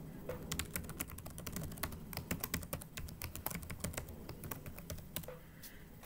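Typing on a computer keyboard: a quick, irregular run of key clicks as a username and password are entered, stopping near the end.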